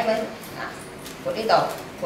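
Short bursts of a person's voice: a brief sound right at the start and a louder one about a second and a half in.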